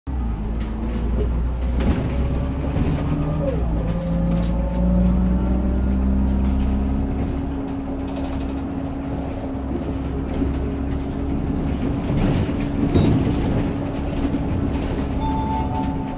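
Cabin sound of a 2008 Hyundai New Super AeroCity low-floor city bus under way, heard at the rear exit door: a steady engine drone over low road rumble. The engine note rises a few seconds in, then holds steady.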